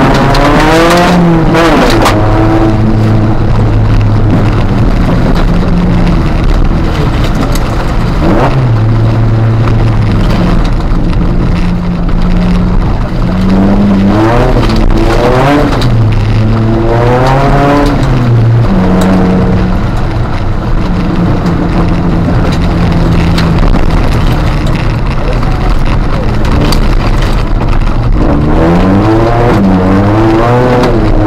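Ford Fiesta ST150 rally car's 2.0-litre four-cylinder engine heard from inside the cabin, revving up and dropping back repeatedly through gear changes, with steady stretches between, over constant tyre and gravel noise.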